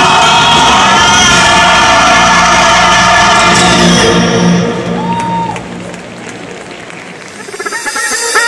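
Large gospel choir singing loudly with band accompaniment, over crowd noise from the audience. The sound fades down about halfway through.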